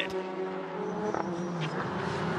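Race car engines running at speed on the circuit, heard from trackside as a steady engine note from several cars.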